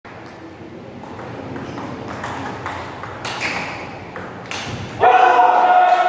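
Table tennis rally: the ball clicking sharply off the bats and the table, about two or three hits a second. About five seconds in, a loud held shout cuts in as the point ends.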